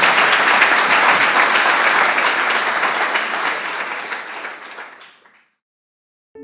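Audience applauding, many hands clapping at once, the applause dying away about five seconds in.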